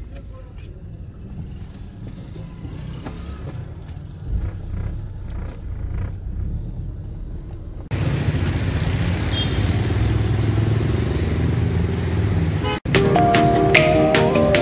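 Low engine rumble from inside a Toyota Corolla's cabin, joined by a louder, steadier rumble of car and road noise about eight seconds in. After a brief cut to silence near the end, background music starts.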